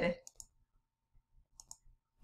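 A few faint computer mouse clicks: one about half a second in and two or three more close together near the end.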